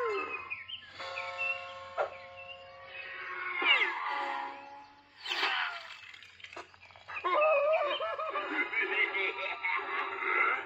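Cartoon soundtrack: music with high-pitched, squeaky voice-like sounds. There are held steady notes about a second in, and it grows louder and busier from about seven seconds in.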